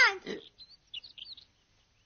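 A few faint, high bird chirps over about a second, part of a cartoon's forest soundtrack.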